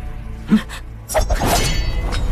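Film soundtrack: a low, steady music drone, with a short thud about half a second in and then a loud crash with a brief ringing tail starting about a second in.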